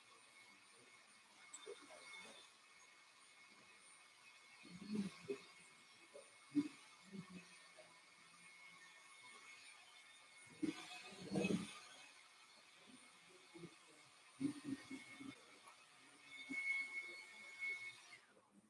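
Quiet room tone with faint, short snatches of distant murmuring voices and a faint steady high-pitched whine.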